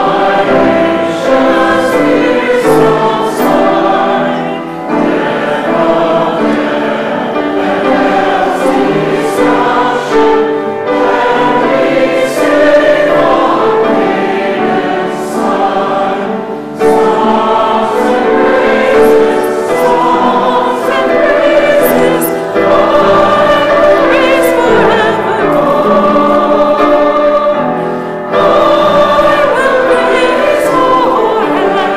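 A congregation singing a hymn together in sustained notes, with short breaks between lines.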